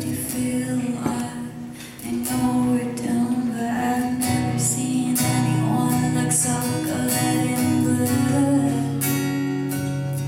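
A woman singing live into a microphone while strumming an acoustic guitar; the music drops briefly quieter just under two seconds in, then carries on steadily.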